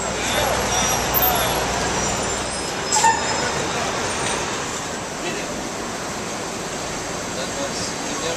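City street noise: road traffic running past with voices in the background. A low engine rumble sits under the first couple of seconds, and a sharp knock comes about three seconds in.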